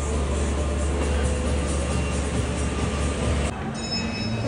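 A steady low rumble and hiss with music faintly behind it, ending abruptly about three and a half seconds in.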